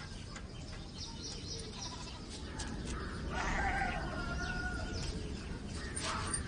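A single drawn-out bleat from small livestock, wavering in pitch, starting about three seconds in and lasting around two seconds, over a low steady background.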